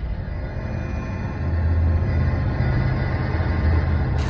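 Steady low rumble of a car on the road, engine and road noise.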